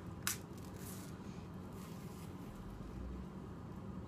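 A banana being peeled by hand: one short sharp snap about a third of a second in, as the stem is broken, then faint soft sounds of the peel being pulled back, over a steady low hum.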